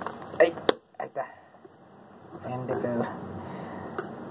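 A sharp plastic snap less than a second in as the diffuser dome of an LED bulb comes off, followed by a couple of lighter clicks of plastic being handled.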